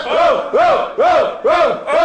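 A group of men chanting a shout in unison, about two a second, each shout rising and falling in pitch.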